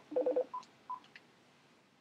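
Short electronic beeps: a brief buzzy tone, then two short high beeps about a third of a second apart.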